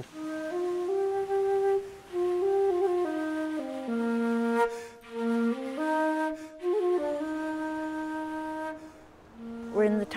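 Background music: a slow melody of long held notes on a flute-like wind instrument, stepping up and down in pitch and dropping away briefly near the end.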